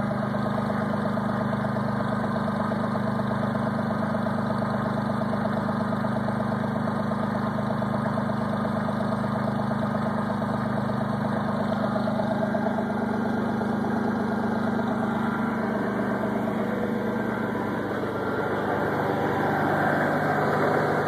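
1990 Ford F-150's 4.9-litre (300 cubic inch) straight-six engine idling steadily in freezing weather shortly after a cold start, heard close to the exhaust pipe under the truck.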